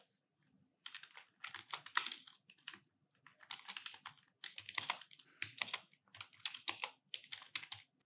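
Computer keyboard being typed on: a run of quick, irregular keystrokes beginning about a second in, with a brief pause near three seconds in.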